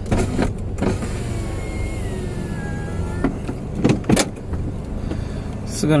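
A car's electric power window motor running for about two seconds with a whine that falls slightly in pitch, followed by a few short knocks, over the low steady hum of the idling car.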